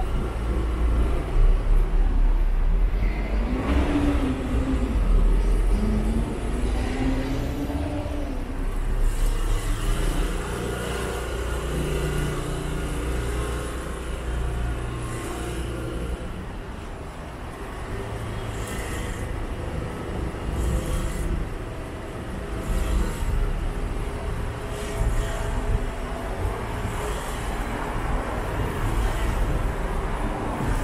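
Street traffic passing on the adjacent road: engines and tyres of cars and buses make a steady rumble. Between about 3 and 8 seconds in, one engine note climbs and falls as a vehicle pulls away.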